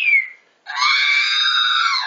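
R2-D2 replica's speaker playing droid sound effects: a whistled beep that glides down and fades, then about two-thirds of a second in, R2-D2's scream, a shrill electronic cry held for over a second that dips slightly in pitch near the end.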